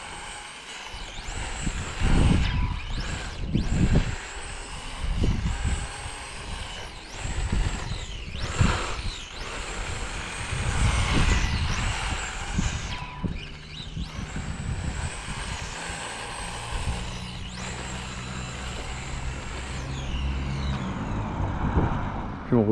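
Brushless 3500 kV electric motor of a 2S RC touring car whining as it revs up and down again and again while the car is driven around, with low rumbles coming and going underneath.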